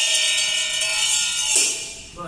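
Bright metal percussion of a Taoist ritual, crashing and ringing: one strike right at the start, another about a second and a half in, then the ringing fades.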